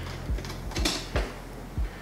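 Screwdriver working a hose clamp on a metal intake pipe: light metallic clicks and clanks, with one sharper clack a little under a second in. A low thump about every half second and a steady low hum run underneath.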